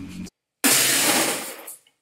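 A person's loud, harsh burst of breath through the mouth just after a gulp of water, starting suddenly about half a second in and fading out over about a second.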